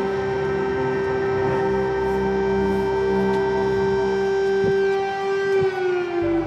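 Air raid siren sounding one long steady tone that begins to fall in pitch near the end, with music underneath.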